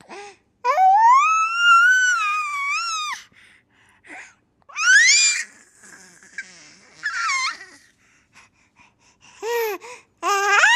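A baby's very high-pitched vocal squeals: one long squeal that rises and is held for about two and a half seconds, then shorter rising squeals with quiet gaps between them, about two seconds in and again near the end.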